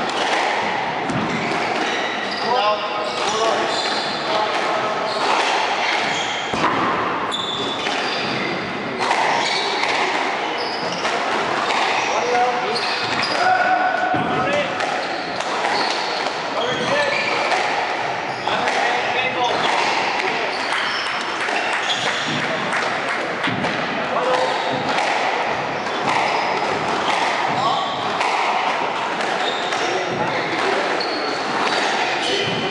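Squash rally: the ball is struck by rackets and hits the court walls in a run of sharp knocks that echo in the enclosed court, over murmuring voices.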